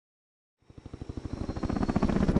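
Helicopter rotor chop fading in about half a second in, a fast, even pulsing that grows steadily louder.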